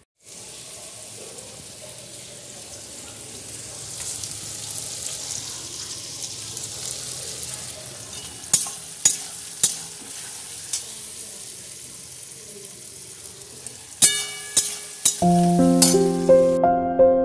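Sliced onions and tomatoes frying in oil in a steel kadai, a steady sizzle. A metal spatula knocks against the pan a few times, more often near the end. Piano music comes in about a second before the end.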